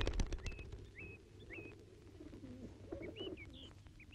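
Birds chirping: short, upturned chirps repeated about every half second over a faint background. A run of clicks fades out in the first half second.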